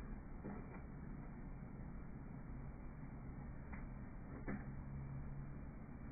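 Faint steady running noise of a Dell Dimension 4550 desktop computer as it powers up and starts to boot, with a few soft clicks.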